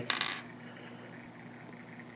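A brief light click of small plastic action-figure parts being handled just at the start, then faint room tone with a low steady hum.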